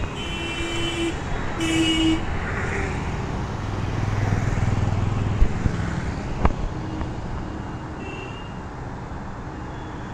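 Road traffic: a steady rumble of passing vehicles that swells midway, with two short vehicle horn toots in the first two seconds.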